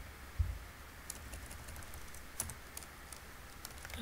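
Typing on a computer keyboard: a handful of scattered keystrokes, with one sharper knock about half a second in.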